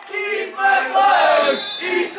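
A group of voices chanting a football song together in sung phrases, breaking briefly about half a second in.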